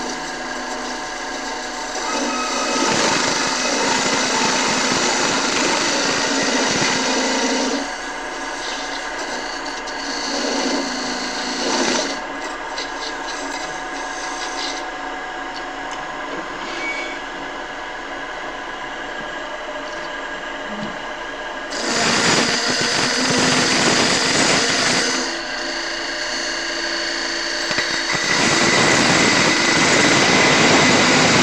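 Wood lathe running, with a hand-held turning tool cutting into a spinning wooden rolling-pin blank as sizing cuts are taken down to marked diameters. The cutting grows louder for a few seconds in, again past the twenty-second mark, and near the end.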